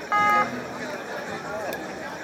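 A short, loud beep, one steady tone lasting about a third of a second just after the start, over the murmur of crowd chatter and distant voices.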